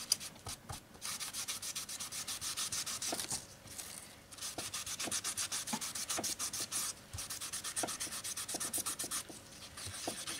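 A cloth rubbing walnut leather dye into a strip of undyed leather in quick circular strokes: a fast, scratchy swishing with two short pauses, one about three and a half seconds in and one near the end.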